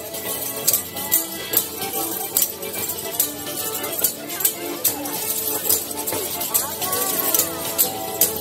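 Sicilian folk music in a street parade: women singing while striking tambourines (tamburelli) in a steady beat of about two strikes a second, with a marching band's clarinets and brass playing along.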